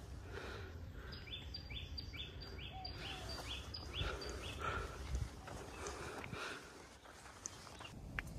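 A bird calling a run of about nine short, high, falling notes, two or three a second, over a low rumbling background noise.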